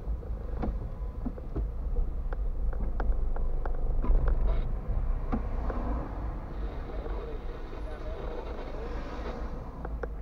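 Car interior noise picked up by a windscreen dashcam while driving slowly in traffic: a steady low rumble from the engine and road, with scattered irregular clicks and knocks in the first half.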